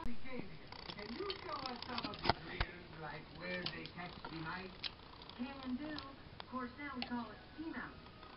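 Quiet background speech from a TV movie, with a few sharp clicks from LEGO pieces being handled.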